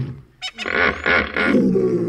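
African hippopotamus calling: three short pulses in quick succession, then one long, deep call starting just past halfway.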